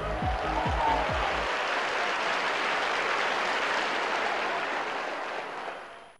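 Studio audience applauding, fading away near the end. Music with a steady beat runs under the clapping for the first second and a half.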